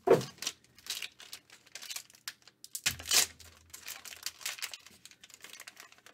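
Silver foil card wrapper crinkling and tearing as it is pulled open by hand: a run of irregular crackles, loudest just after the start and again about three seconds in.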